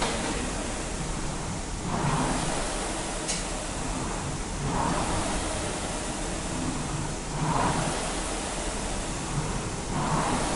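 Air-flywheel indoor rowing machines (ergs) whooshing with each drive stroke: the fan noise swells about every three seconds, three strokes in all, over a steady hiss.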